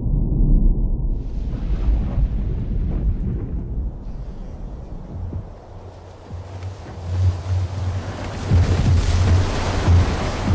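Wind and surging sea water rushing, with a heavy low rumble at first; about halfway in a deep low hum comes in and the rush swells again toward the end.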